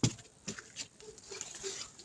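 Scattered light taps and rustles with one sharper knock at the start: movement and handling noise as someone walks among potted plants with a hand-held camera.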